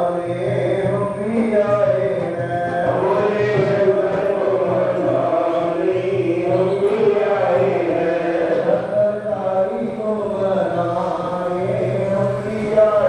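Devotional chanting with music: a sung, gliding melody over a steady low drone, running on without a break.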